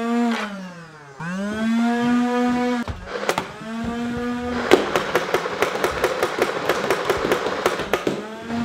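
A motorized Nerf Rival foam-ball blaster spinning its flywheels up and back down three times, a whine that rises, holds and falls. About five seconds in it starts firing full-auto: a fast stream of sharp shots over the motor hum.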